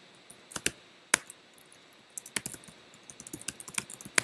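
Typing on a computer keyboard: irregular keystrokes, a few scattered at first, then a quicker run of taps in the second half as a name and an email address are typed.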